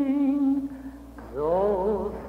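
A woman singing a Yiddish lullaby solo, from an archival recording played back: a long held note with vibrato fades out about half a second in, and after a brief pause a new phrase begins, gliding upward.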